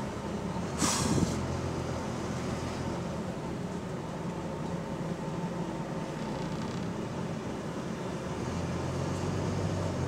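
Interior of a Volvo double-decker bus on the move, heard from the lower deck: a steady engine hum and cabin rumble. A short, sharp hiss comes about a second in, and the engine note grows a little louder near the end.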